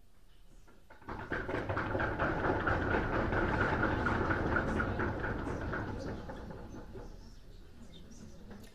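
A lecture-hall audience making a dense clatter of many small knocks and rustles at once. It swells about a second in and fades away over the next several seconds.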